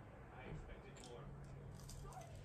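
Faint eating sounds from toast being dipped in runny egg yolk and bitten: a sharp click about a second in and soft ticks near the end. A low steady hum comes in about halfway.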